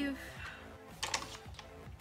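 A few light clicks and taps of makeup packaging being handled and set down, about a second in and again near the end.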